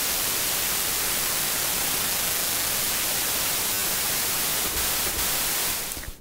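Near-white noise from a software FM synthesizer (Native Instruments Absynth 5): an inharmonic oscillator frequency-modulated very hard by a second oscillator, so that sidebands fill all frequencies. A steady, even hiss that fades out just before the end.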